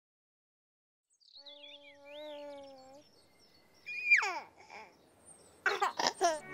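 A baby babbling and cooing: a held 'aah', a quick squeal that falls steeply in pitch about four seconds in, and a short burst of babble near the end, with faint bird-like chirps during the first sound.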